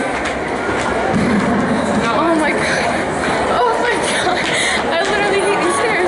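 Several people talking and chattering in a stone stairwell, the words indistinct.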